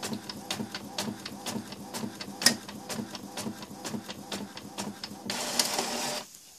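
Epson XP-322 inkjet printer printing a label: a steady run of mechanical clicks, several a second, with one sharper click about halfway through. It ends in a short rush of noise as the printed sheet comes out.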